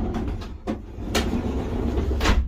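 Knocks and a low rumble from a person climbing up into a van through its side door, his weight going onto the van's floor and body, with two sharp knocks about two-thirds of a second and just over a second in.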